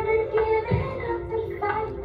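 A woman sings a melody into a microphone over musical accompaniment with bass and a drum beat, two drum hits falling in the first second.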